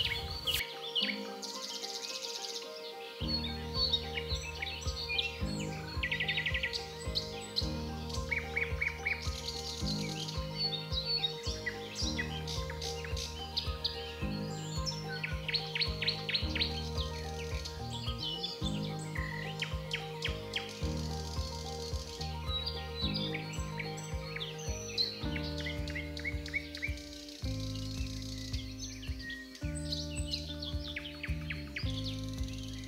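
Birds chirping repeatedly in short, quick calls over background music with slow, steady chord changes.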